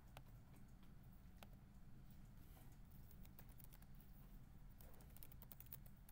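Faint computer keyboard typing over a low steady hum: a few single clicks, then a quick run of keystrokes about five seconds in, as a terminal command is typed.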